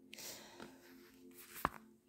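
Quiet pause: a faint steady background music bed, a soft breath in the first half second, and one sharp click near the end.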